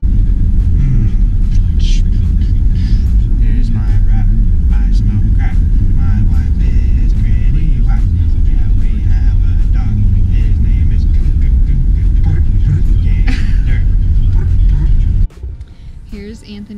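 Steady road and engine rumble inside a moving vehicle's cabin, with a man's voice faintly over it. It cuts off suddenly near the end.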